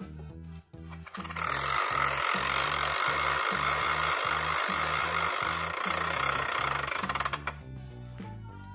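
A phone app's spinning prize-wheel sound effect: a dense, fast clatter that starts about a second in, runs for about six seconds and cuts off sharply near the end, over background music with a steady bass line.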